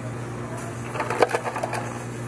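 Ice dispenser of a Coca-Cola touchscreen fountain machine clicking and clattering for under a second, about a second in, as a paper cup is held under the chute: the machine has run out of ice. A steady low hum runs underneath.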